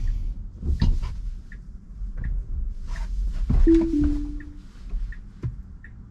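Tesla Model Y cabin on the move: low road rumble with a few sharp knocks and a soft tick repeating about every 0.7 s, in the manner of the turn signal. Just past the middle the car sounds a short two-note chime, the second note slightly lower.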